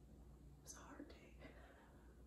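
Near silence with a faint breathy whisper from a person lasting about a second, starting just over half a second in.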